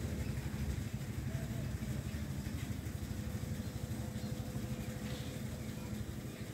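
A steady low mechanical hum, like an engine or motor running at idle, with a faint steady higher tone over it.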